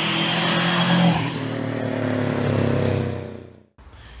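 Animated logo intro sound effect: a loud whoosh over a low droning rumble, with a bright shimmering glint about a second in, fading away shortly before the end.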